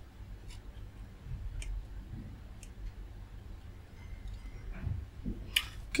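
A few faint clicks of multimeter probe tips and fingers handling a plastic connector on a circuit board, with a brief louder rustle near the end.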